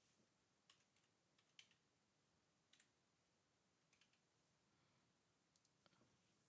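Near silence with five faint, sharp clicks about a second apart: keystrokes on a computer keyboard as a ticker symbol is typed in.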